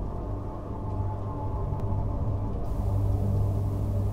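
A low, steady rumbling drone with faint held tones above it: dark ambient film-score sound design.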